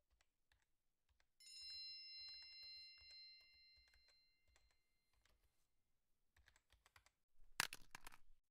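Faint, quiet clicks of a smartphone touchscreen keyboard being tapped, with a single bright chime about a second and a half in that rings on and fades away over several seconds. A louder, sharper cluster of clicks comes near the end.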